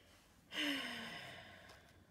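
A person's sigh about half a second in: a breathy exhale with a faint voice falling in pitch, fading out over about a second and a half.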